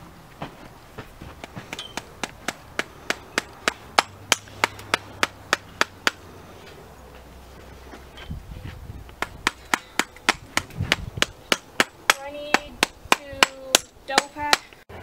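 Steady hammering: sharp knocks at about three a second, in two runs with a pause of about two seconds in the middle.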